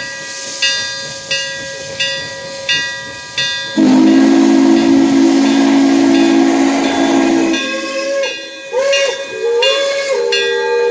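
Steam locomotive of the QJ 2-10-2 class (IAIS #6988) approaching. Its bell rings about one and a half strokes a second, then a long chime-whistle blast of several low notes sounds for nearly four seconds. Shorter whistle toots that swoop in pitch follow near the end, over hissing steam.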